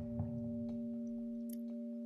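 Background ambient music: a steady drone of a few held tones, singing-bowl-like, getting slowly softer.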